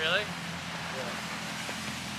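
Lamborghini Urus twin-turbo V8 running at low, steady revs as the car creeps through snow, with its traction control holding the power down so the wheels don't spin.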